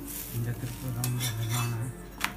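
Steel spatula scraping and clicking against a cast-iron tawa as a stuffed paratha is worked on it, with several sharp clicks about a second in. A low steady hum runs under it from about a third of a second in until just before the end.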